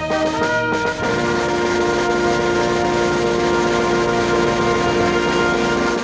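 A mixed instrumental ensemble with brass and saxophones playing; about a second in it moves onto one long held chord.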